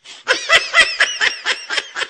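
Laughter: a rapid run of short, high-pitched laughing bursts, about five a second, loudest in the first second and then trailing off.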